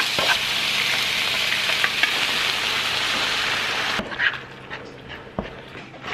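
Chopped onion sizzling in a non-stick frying pan while a wooden spatula stirs it, scraping over the pan. About four seconds in the sizzle cuts off and only a few soft knocks and scrapes follow.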